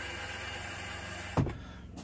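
Fresh water rushing steadily into an RV toilet bowl through the open flush valve, cutting off with a short thump about one and a half seconds in.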